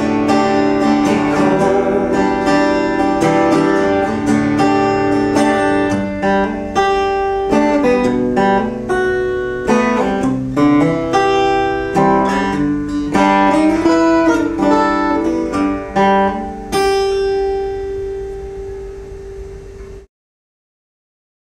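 Solo acoustic guitar, capoed, playing an instrumental passage of picked notes and chords. A final chord is struck near the end and left to ring out, fading away.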